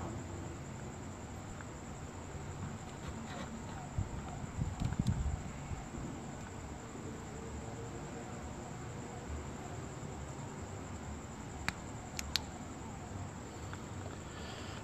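Night insects, crickets, trilling steadily at a high pitch over a soft outdoor hiss. A few low bumps come about four to five seconds in, and two or three sharp clicks come near the end.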